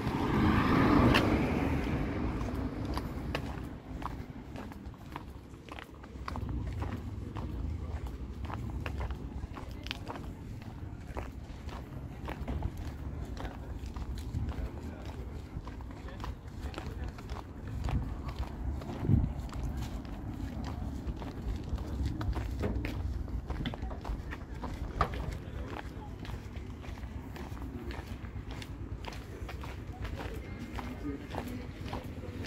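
Outdoor street ambience while walking: footsteps on pavement, a steady low rumble and faint voices of people nearby. The sound swells loudest in the first two seconds.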